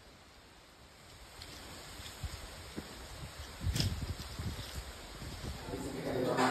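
Outdoor ambience with wind rumbling on the microphone and a faint hiss, growing louder after the first second, with a brief knock a little before four seconds in.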